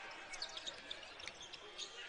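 Faint sounds of basketball play on a hardwood court: a ball bouncing and a few short high squeaks, over a low arena hiss.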